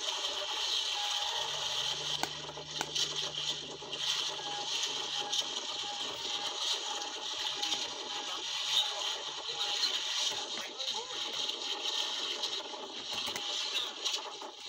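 Steady hiss of wind and sea on the microphone aboard a small outrigger boat on open water, with faint voices in the background.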